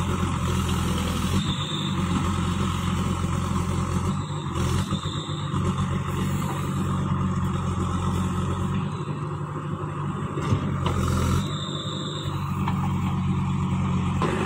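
JCB 3DX backhoe loader's diesel engine running steadily under load while the backhoe digs into soil. The engine note dips and shifts a few times as the hydraulics are worked.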